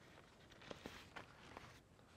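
Near silence, with a few faint clicks and light fabric handling as the door fastening of a pop-up ground blind is worked by hand.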